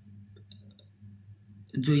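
A steady high-pitched trill carries on through a pause in a man's speech, over a faint low hum. The man starts speaking again near the end.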